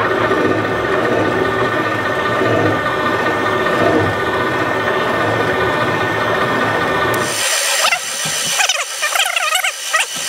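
Seat and guide machine running at slow speed as its cutter bores the pocket for a hardened exhaust valve seat insert in a cylinder head: a steady machining hum with a faint whine over it. About seven seconds in the low hum stops and a thinner, higher, wavering mechanical sound takes over.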